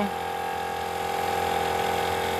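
Small portable tyre compressor running with a steady, even-pitched buzzing hum while it pumps air into a flat car tyre, which has a puncture.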